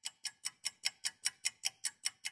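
An added ticking sound effect: a steady run of sharp, evenly spaced clicks, about five a second.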